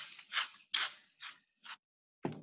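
Aerosol can of shaving cream spraying foam in a series of short hissing spurts, about five in two seconds, getting fainter toward the end.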